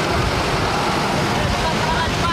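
Trucks driving past with engines running and indistinct voices over them.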